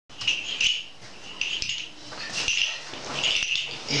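A man laughing off-camera in short, high, wheezy bursts, about one a second.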